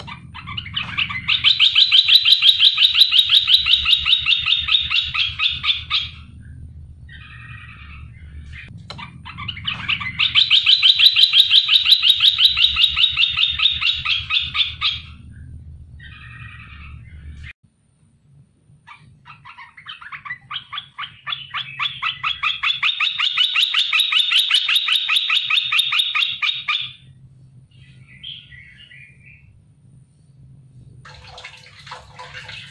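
Caged merbah belukar bulbul giving three long, fast trills of rapidly repeated notes, each lasting about five seconds, with short single calls in the gaps between them.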